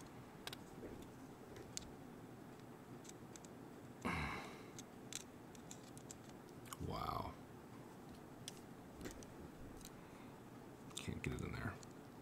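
Light scattered clicks and handling noise from a metal caliper being slid and set against a small hobby servo, with a few louder brief rubs about four seconds in and near the end. A short murmured voice sound about seven seconds in.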